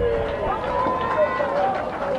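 Several voices of footballers and spectators shouting and calling out in the open air, with one long drawn-out shout in the middle.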